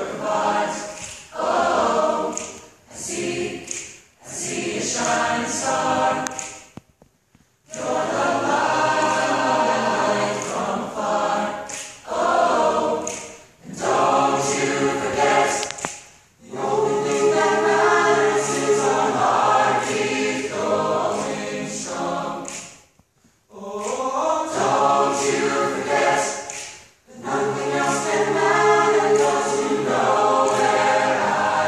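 Mixed choir of men and women singing a contemporary pop a cappella arrangement, with no instruments. The singing comes in phrases with short breaks between them, and two brief full pauses, about a quarter and three-quarters of the way through.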